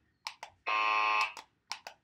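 Handheld novelty buzzer from a RoC Skincare 'For Your Age' kit giving one flat, steady buzz of a little over half a second. There are a few short clicks before it and two near the end.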